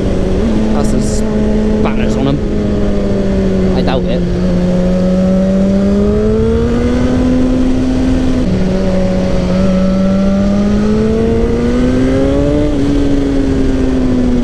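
Sport motorcycle engine running under way, its pitch slowly rising and falling with the throttle over a steady rush of wind. About eight and a half seconds in, the pitch drops suddenly with an upshift, then climbs again.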